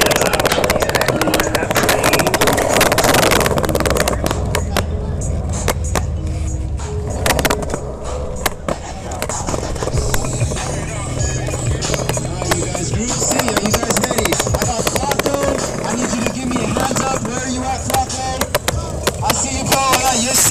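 Music playing over a PA with a steady bass line, mixed with skateboard wheels rolling and repeated sharp clacks of boards. Faint voices are in the background.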